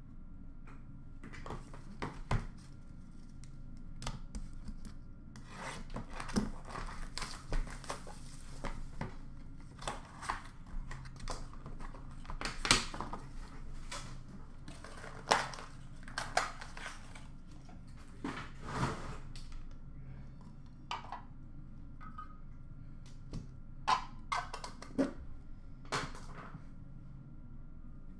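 Small cardboard boxes and trading cards being handled on a glass counter: irregular rustling and rubbing with scattered sharp taps and clicks, over a steady low hum.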